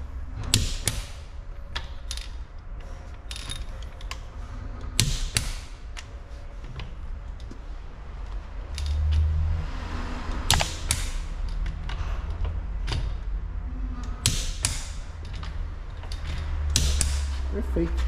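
Torque wrench on a Peugeot 206's wheel bolts: a series of sharp metal clicks, often in pairs and a few seconds apart, as the wrench is worked and reaches its set torque on each bolt. A steady low hum runs underneath.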